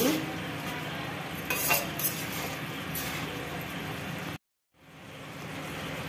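A spatula stirring and scraping through a cooked potato and pointed gourd curry in a kadhai, the thick gravy sizzling steadily, with a few sharper scrapes against the pan. The sound drops out briefly about four seconds in, then fades back.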